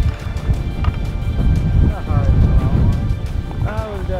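Wind buffeting the microphone on an exposed summit ridge: a heavy, gusting low rumble throughout, with short pitched sounds over it about two seconds in and near the end.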